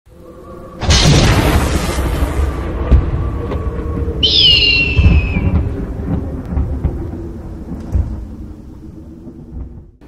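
Animated logo intro sound design: a loud thunder-like boom about a second in that rumbles and slowly fades under a droning music bed, with a descending hawk screech around four seconds in.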